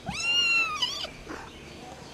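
A kitten meowing: one high-pitched meow about a second long that rises, holds, then falls away.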